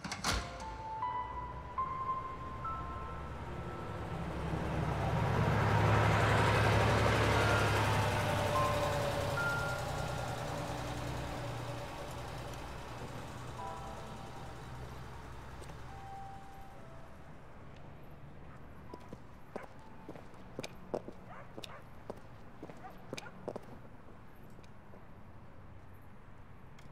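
A vehicle's rumble swells and fades over several seconds, with a few soft held musical notes early on. Later come scattered light metallic clicks and clinks, like work under a car's open hood.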